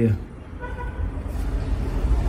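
A short horn-like toot lasting about half a second, faint, over a low steady rumble.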